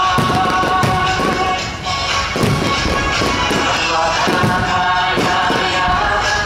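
Aerial fireworks bursting in a string of sharp bangs, one or two a second, over loud music that plays throughout.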